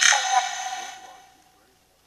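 Necrophonic spirit-box app playing through a phone's speaker with its reverb setting on: a garbled, echoing burst with a held tone that dies away about one and a half seconds in.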